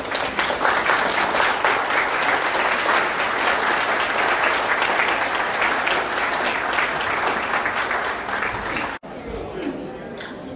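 Theatre audience applauding, a dense, even clatter of many hands clapping, which cuts off abruptly about nine seconds in.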